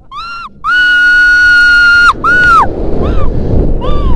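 A young woman screaming during a rope jump: a short shriek, then one long high scream held about a second and a half, another short shriek, and fainter cries near the end, over wind rushing on the microphone.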